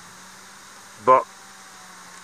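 A steady background hum with a constant low tone, under one short spoken word about a second in.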